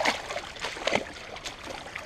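Feet wading and splashing through shallow creek water, a few sharper splashes at the start and about a second in, over the creek's trickle.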